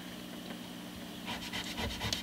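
Hands rubbing and scrubbing along the fingerboard of a Rickenbacker 4001 bass neck. It is faint over a low steady hum at first, and quick rubbing strokes start a little past halfway.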